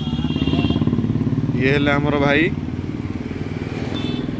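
A single-cylinder motorcycle engine, the Bajaj Pulsar 220F's, running steadily close by. A person's voice is heard briefly about halfway through.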